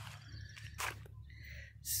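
Faint rustles and soft clicks from a handheld camera being moved in close, over a low steady rumble.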